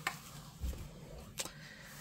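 Quiet car-cabin room tone with faint handling noise: a sharp click at the start, a soft low thump a little later, and another click about a second and a half in.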